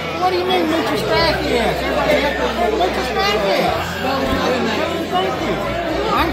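Several people talking over one another around a table, overlapping conversation with no single clear voice.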